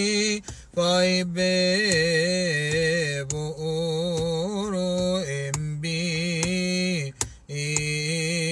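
A man chanting a Coptic Orthodox hymn of Palm Sunday vespers solo and unaccompanied, in long held notes with wavering melismatic ornaments. Phrases break off briefly for breaths four times.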